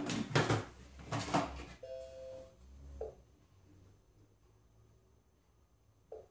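Lid of a Monsieur Cuisine Connect kitchen machine knocking and clicking as it is fitted onto the steel mixing bowl, followed by a steady two-pitch beep from the machine about two seconds in and a short beep about a second later as its touchscreen is pressed.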